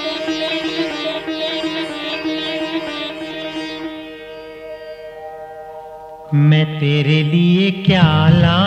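Instrumental opening of a Hindi film song: a long held note fades away over about six seconds, then a louder melodic instrumental phrase comes in with stepping notes.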